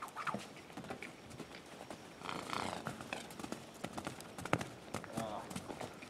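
Horse's hooves on sand arena footing as a loose filly moves off at a trot: a string of short knocks. A person's voice comes in briefly in the middle and again near the end.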